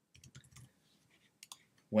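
Faint computer-keyboard typing, a quick run of a few keystrokes, then a single click about a second and a half in.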